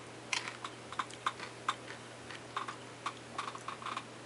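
Eating spaghetti from a bowl: a quick, irregular run of small clicks from a fork against the bowl, mixed with chewing.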